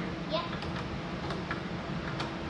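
A few light, sparse ticks from a hand tool tightening a trailer tail light's mounting bolts, over a steady low hum.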